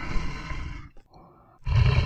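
Male lion roaring: a call in the first second, a softer one after it, then a louder, deeper call near the end.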